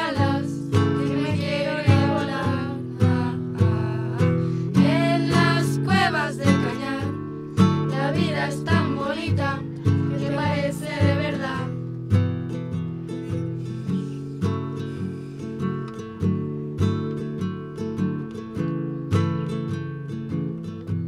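Two acoustic guitars strummed in a steady rhythm, with a group of young girls' voices singing over them until about twelve seconds in; after that the guitars carry on alone.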